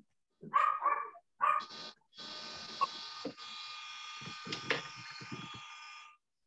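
A dog barks about four times in quick succession in the first two seconds. Then a steady, high, buzzing noise like a small electric motor starts and runs until it cuts off at the end.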